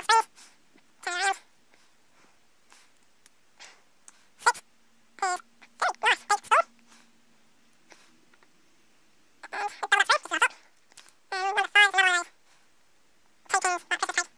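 A pet animal vocalizing in clusters of short, high-pitched calls every few seconds, with a faint steady low hum in the middle.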